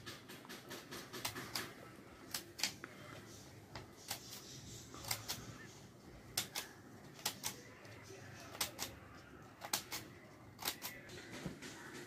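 Orange-handled scissors snipping slits into folded paper: a string of short, crisp snips, often two close together, about once a second.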